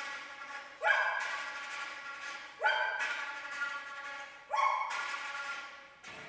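Contemporary chamber music for flute, recorder, harp and harpsichord: three sharp, accented pitched attacks about two seconds apart, each swooping up at its start and then dying away.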